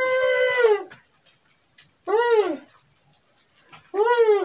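Muffled, whining cries from a man gagged with tape over his mouth: three calls, each under a second long and rising then falling in pitch, with short silences between.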